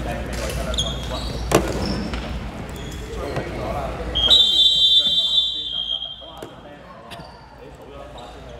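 Referee's whistle blown once in a sports hall, one long steady blast of about a second and a half, starting a little after halfway through. Before it, a single basketball bounce sounds on the court about a second and a half in, over voices in the hall.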